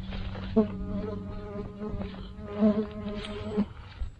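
A flying insect buzzing close to the microphone for about three seconds, a steady drone that wavers a little, with the rustle of a backpack being rummaged through.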